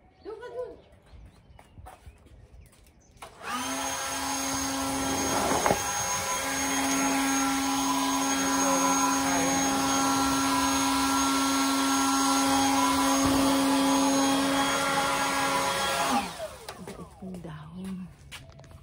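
Leaf blower switching on about three seconds in, running at a steady whine for about thirteen seconds, then switching off and winding down.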